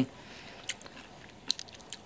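A person biting into and chewing a piece of deep-fried haggis, with a few short crisp crunches through the middle and towards the end.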